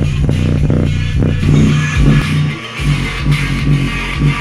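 A 4-inch mini subwoofer in an MDF box playing a rap track loud, its bass line strongest, over a steady beat. The bass drops out briefly just past the middle. The sub is being pushed to about 51 watts RMS.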